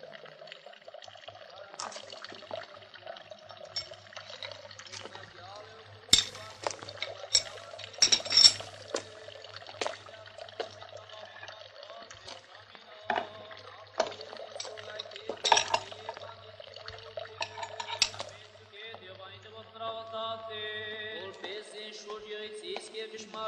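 Hand tools clinking and knocking as they are gathered up and packed into a wooden tool box, in scattered sharp clinks. Held musical tones come in faintly near the end.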